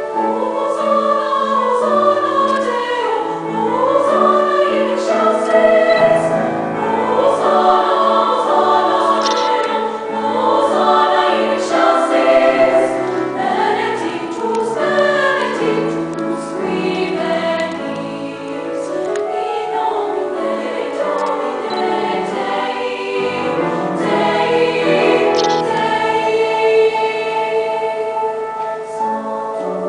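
High school treble choir singing in parts with piano accompaniment.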